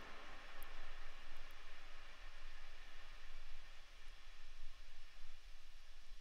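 Steady background hiss with a faint low hum, the room noise and microphone noise floor heard with the recorder's noise suppression set to zero dB, unprocessed.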